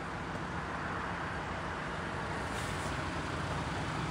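Steady motor-vehicle noise, an even running hum with no distinct events.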